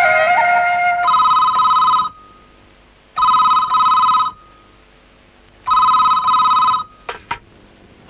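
A desk telephone ringing three times, each ring a steady electronic trill about a second long, the rings about two and a half seconds apart. Film background music fades out just before the first ring, and a few short clicks near the end come as the receiver is lifted.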